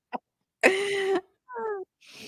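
A person's voice making non-word sounds: a loud, breathy half-second sound at a steady pitch, then a short sound that falls in pitch.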